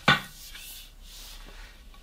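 A length of aluminium extrusion being handled: a short knock at the start, then faint rubbing and sliding as it is lifted and moved.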